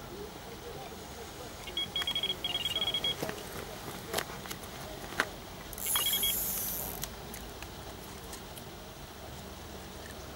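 Delkim TXi carp bite alarm sounding a run: a fast string of short high beeps lasting about a second and a half, then a shorter burst about six seconds in. Between them come a couple of sharp clicks, and a brief rushing hiss follows the second burst.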